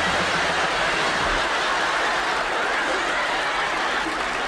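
Studio audience applauding steadily, with some laughter mixed in.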